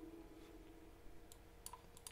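Near silence with room tone, and three faint computer mouse clicks in the second half.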